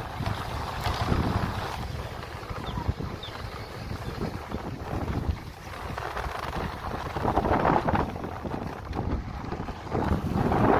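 Wind buffeting the microphone of a phone carried on a moving motorbike: an uneven rush with low rumble, louder about seven to eight seconds in.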